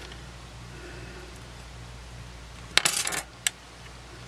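A short cluster of light metallic clicks and clinks near the end, then one more click, as the partly disassembled compact camera and its small parts are handled on a metal work surface, over a low steady hum.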